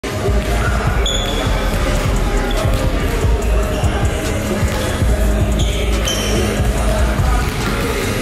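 Basketballs bouncing on a hardwood court, a steady run of dribbles, with two short high squeaks about a second in and near six seconds, under background music.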